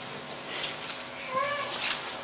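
A single short, high-pitched call with an arching pitch, about a third of a second long, a little past halfway through, over faint brief scratchy noises.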